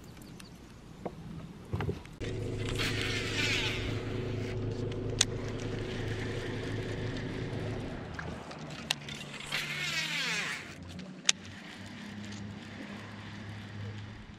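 Bass boat's electric trolling motor humming steadily, shifting pitch about eight seconds in, while a baitcasting reel whirrs during two casts, about three and ten seconds in, with a few sharp clicks.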